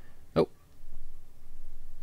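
A man's single short, surprised "oh" about half a second in, followed by a pause with only a faint low hum.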